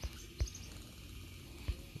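Two short, low thumps, about half a second in and near the end, from a finger handling the phone while scrolling, with faint bird chirps in the background.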